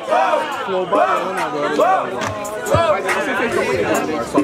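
Crowd chatter: several voices talking over one another.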